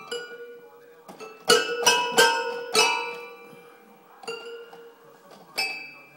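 Toy piano keys banged by a baby: a scatter of ringing notes, several struck at once, loudest in a quick cluster of four about one and a half to three seconds in, with single notes after.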